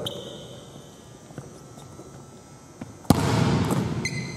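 A basketball bouncing once on a hardwood gym floor: a single sharp hit about three seconds in, after a quiet stretch of room noise.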